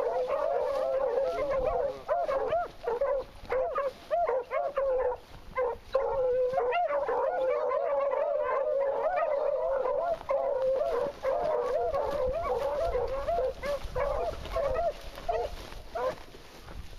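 A pack of beagles baying together in a continuous chorus of overlapping, wavering voices, the cry hounds give when running a rabbit's scent line. Near the end the chorus thins out to fewer voices.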